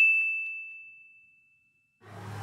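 A single bright ding sound effect: one high bell-like tone that rings out and fades away over about a second and a half.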